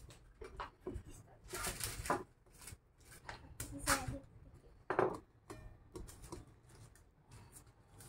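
Sheet of baking paper rustling and crinkling as hands smooth it flat on a table, in short, irregular bursts, with a few brief murmured vocal sounds in between.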